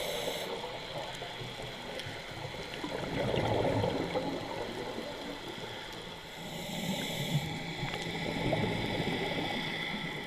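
Scuba breathing heard through an underwater camera: a regulator's hiss near the start and again about two-thirds of the way in, with gurgling exhaust bubbles in between and after.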